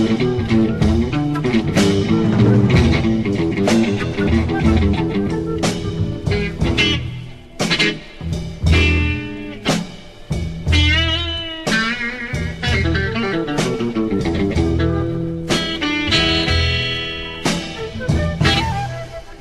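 Late-1960s psychedelic blues-rock with jazz leanings, in an instrumental passage: electric guitar over bass and a drum kit. Lead lines with wavering, bending notes come in about halfway through and again near the end.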